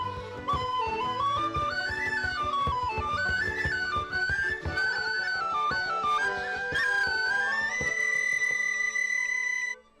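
Tin whistles playing a lively Irish traditional tune: a quick run of ornamented notes climbing and falling over a steady beat. Near the end the tune lands on one long held high note, then stops abruptly.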